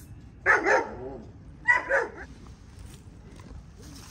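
Two loud, close animal calls about a second apart, each with a double peak.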